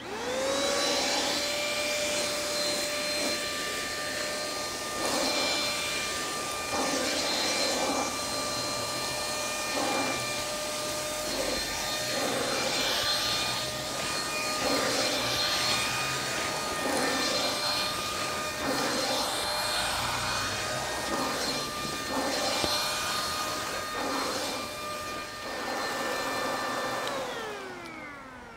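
Eureka 71B Easy Clean corded handheld vacuum (about 600 W) switched on, its motor spinning up to a steady high whine, with repeated rustling surges as it is stroked over a mattress sucking up wood shavings. It is switched off near the end, the whine falling as the motor winds down.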